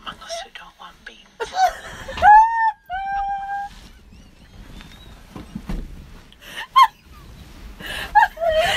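High-pitched squealing cries: a few held calls about one and a half to three and a half seconds in, and a short one near the end, among scattered light clicks and knocks.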